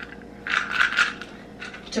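Capsules rattling inside plastic Balance of Nature supplement bottles as they are shaken and moved, in a short burst of several clicks about half a second in.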